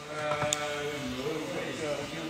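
A man's voice in a long drawn-out vocal sound rather than words, held steady at first and then bending up and down, with one sharp click about half a second in.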